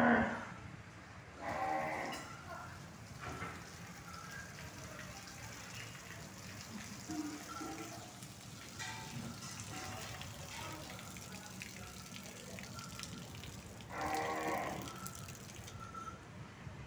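Desi (zebu) cows mooing: one loud call right at the start, another about two seconds in, and a third near the end.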